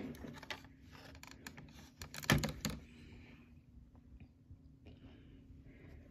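Plastic clicks and taps from a Liger Zero Midnight Shield action figure's blades being moved by hand, mostly faint, with a louder cluster of clicks a little over two seconds in.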